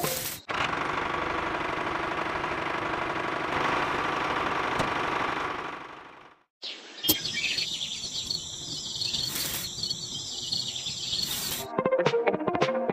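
A steady rushing noise that fades out about six seconds in. After a brief silence comes outdoor ambience with birds chirping.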